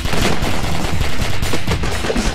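Rapid gunfire sound effects: a dense, loud run of shots like machine-gun fire.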